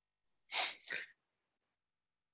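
A person's short, breathy vocal burst in two quick parts, about half a second in, heard through the call's audio line.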